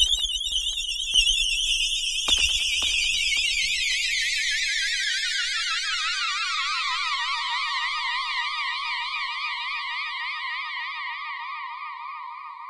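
Yamaha FB-01 FM synthesizer voice 'HUMAN+' sounding: a high, warbling tone with fast vibrato starts suddenly, glides steadily down in pitch over about seven seconds, then holds and slowly fades. Low rumbling and a few knocks sit under it in the first few seconds.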